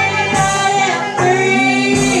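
Church worship song: singing over instrumental backing with a steady beat.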